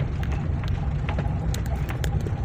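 Inside a moving car: a steady low engine and road rumble, with scattered light clicks and rattles.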